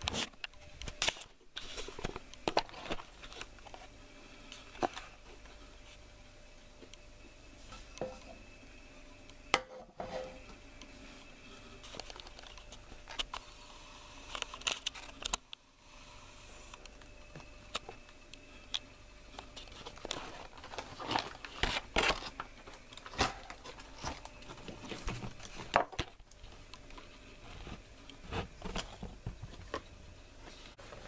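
Irregular clicks, knocks and rustling from kitchen handling: the camera being picked up and moved, and pans and utensils being handled. A faint steady hum runs underneath.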